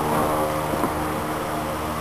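Steady low machine hum that holds even throughout, with a faint knock about three quarters of a second in.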